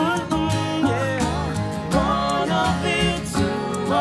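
Live acoustic folk-pop band playing: strummed acoustic guitars, accordion and upright bass, with voices singing over them.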